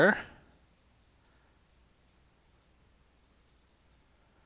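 A series of faint computer mouse clicks, as the chart's replay is stepped forward click by click, after the last word of speech.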